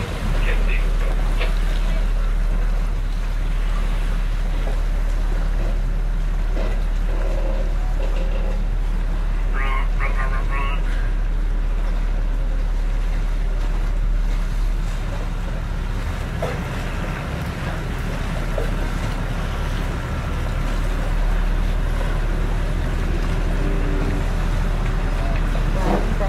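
Steady low rumble of wind and water on open water, heard from aboard a boat, with brief snatches of voices about ten seconds in.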